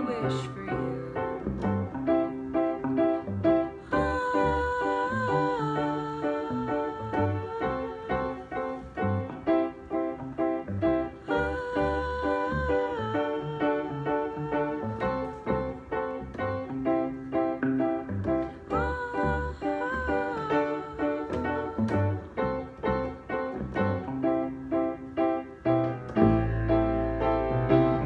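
A piano and an electric guitar playing a song, with low piano notes underneath and a wavering melody that comes in three phrases.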